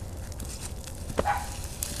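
Bonfire of dead leaves crackling faintly: scattered small pops over a steady low rush.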